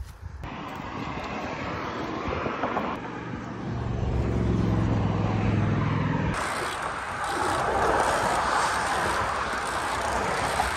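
Road traffic: a motor vehicle's engine hum builds over a few seconds and breaks off suddenly. It is followed by a steady rush of wind and road noise from a bicycle descending a highway at speed, with cars passing.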